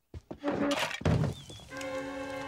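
Cartoon sound effects: a few soft knocks and a thunk in the first second, like a door swinging, then a steady held note with many overtones starting near the end.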